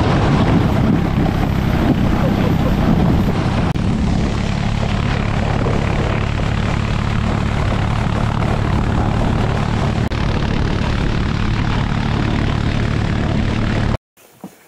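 An ATV engine runs steadily as it tows a sled across snow-covered ice. Under the engine tone there is a constant rush from the sled sliding over the snow and from wind.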